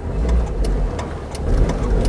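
Car engine running and road rumble heard from inside the cabin as the car moves slowly, with light clicks ticking about three times a second.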